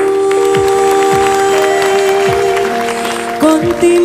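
Bolero band accompaniment playing an instrumental passage of long held notes, with audience applause mixed in over the first few seconds.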